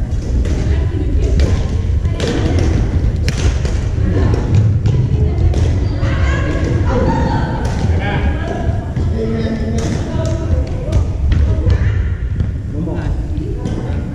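Badminton rackets hitting shuttlecocks in sharp, irregular cracks from several courts, with thuds of shoes on a wooden gym floor. Players' voices echo through the large hall.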